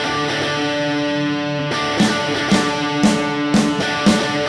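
Live rock band playing: electric guitar chords ring out, then the drums come in about halfway with a steady beat of about two hits a second.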